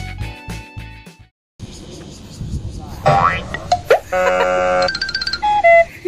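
Guitar-backed music that cuts off about a second in, then after a brief silence a string of edited-in cartoon sound effects: quick sliding pitch sweeps, a held chime-like chord, and short whistle tones near the end.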